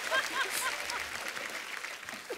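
Studio audience applauding, the clapping dying down over the two seconds.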